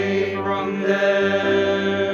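Mixed church choir singing in harmony, holding long sustained chords on the words 'when the angels went away from them'.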